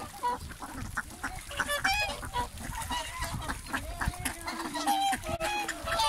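Wintering swans and ducks calling together at close range: many short honks and calls overlapping, some higher and some lower, with no pause.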